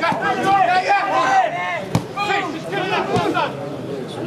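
Several people's voices talking and calling over one another, none of it clear words, with two sharp knocks about two and three seconds in.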